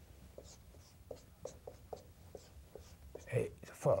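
Marker pen writing on a whiteboard: a run of short, quick strokes, about three a second, as letters are drawn.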